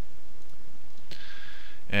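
A single click about a second in, followed by a soft breath-like hiss, over quiet room tone.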